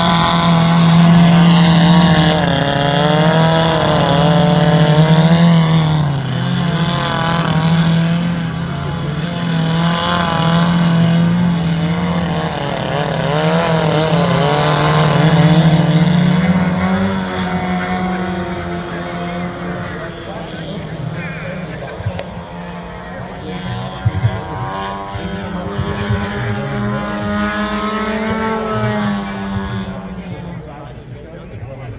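Engines of two 110-inch radio-controlled aerobatic biplanes running together, their pitch dipping and rising as the throttles change through the manoeuvres. The sound grows fainter in the second half as the planes climb away, with a rise in pitch near the end.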